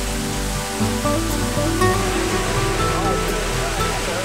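Water from a spray fountain splashing steadily, under background music.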